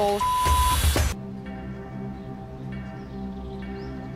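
A censor bleep, one steady pure tone about half a second long, cuts off a swear word right at the start. Background music with long held notes then follows.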